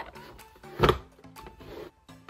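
Quiet background music with one sharp knock about a second in, as a canvas is set onto a cardboard paint-by-numbers box that has been folded into an easel.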